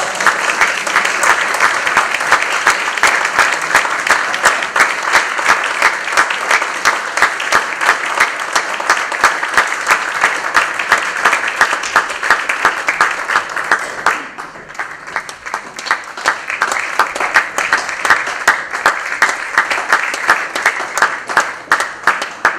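A theatre audience applauding: dense, steady clapping that thins for a moment about two-thirds of the way through, then builds again.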